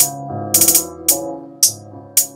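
Programmed trap hi-hat pattern playing back from the Akai MPC software. Single hi-hat hits fall about every half second, with a quick roll of several rapid hits about half a second in, where one note has been split into four. A steady pitched tone sits underneath.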